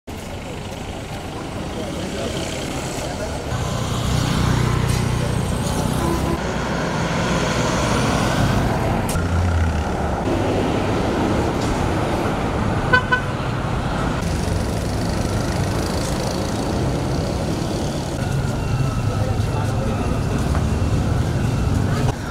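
Outdoor street ambience of passing traffic and indistinct crowd voices, with a short vehicle horn beep just past halfway.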